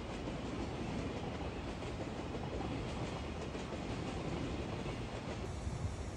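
A train running on the station tracks: a steady rumble with faint clicking of wheels over the rail joints.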